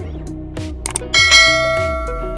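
Background music with a steady beat. About a second in, a bright bell chime rings out loudly and fades slowly, the notification-bell sound effect of a subscribe-button animation.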